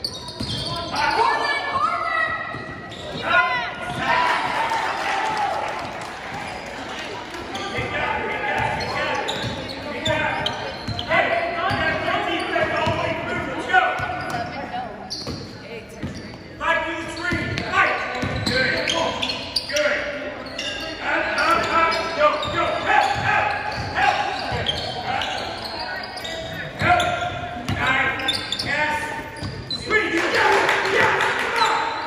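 Basketball dribbling on a hardwood gym floor during play, with players' and spectators' voices and shouts ringing around a large echoing gym.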